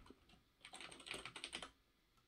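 Faint typing on a computer keyboard: a quick run of keystrokes starting about half a second in and lasting about a second.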